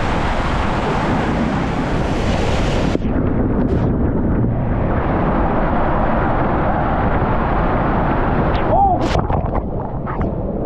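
Rushing water and wind buffeting the camera as a raft slides through a water coaster's tube. About three seconds in, the sound turns duller, and near the end water splashes up around the raft.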